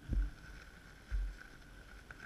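Wind gusting over the microphone in two low buffets about a second apart, with a faint steady high tone underneath.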